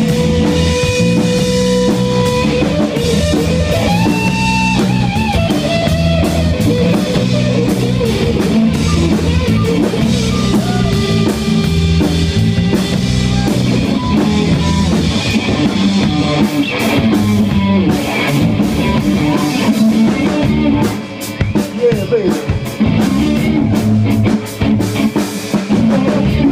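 Live rock band playing an instrumental passage: an electric guitar lead with held and bending notes over a Ludwig drum kit and a second guitar. About 21 seconds in, the low end drops out and the band plays choppy, stop-start hits.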